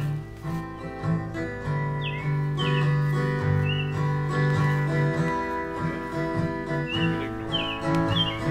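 Acoustic guitar playing an instrumental piece of held chords and picked notes, with a few short bird chirps above it.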